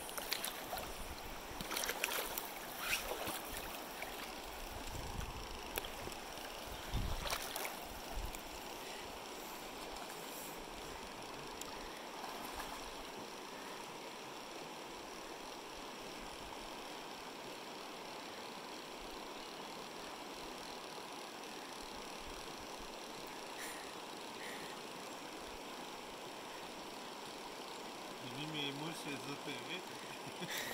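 Steady rush of a shallow river running over a rocky bed, with several knocks and thumps in the first eight seconds and a brief voice near the end.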